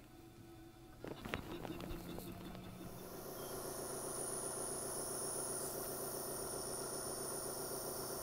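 Clicks of buttons being pressed on the control panel of a Hill-Rom The Vest airway clearance system. Its air pulse generator then starts, builds up over a second or so and runs with a steady hum and hiss.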